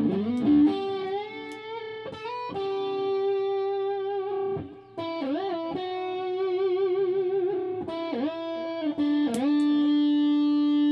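Ibanez custom electric guitar played with the fingers, no pick, through an amp: held notes and chords bent by the whammy bar, with several quick dives in pitch that spring back and a wavering bar vibrato in the middle.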